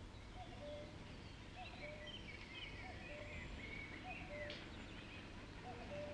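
Faint birdsong: high chirping notes with a lower two-note call repeating about once a second, over a steady low hum.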